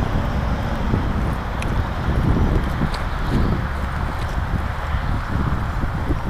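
Wind buffeting the microphone: a steady rumbling hiss with a few faint ticks.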